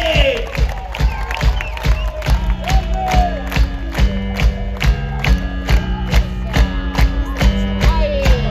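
Live rock band playing an instrumental passage: a steady, loud drum beat, with electric bass and keyboard notes coming in about two seconds in. The crowd cheers and whoops near the start.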